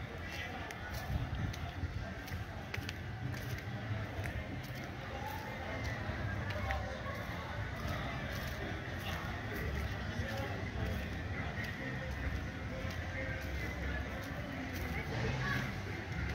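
Outdoor ambience with faint, indistinct distant voices over a low, fluctuating rumble of wind on the microphone, with light ticks of footsteps at about two or three a second.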